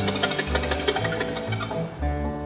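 Fiddle imitating a wren's song: a fast run of short, high chattering notes from the bow, which stops near the end. Under it, a string bass and acoustic guitar keep up a plain backing.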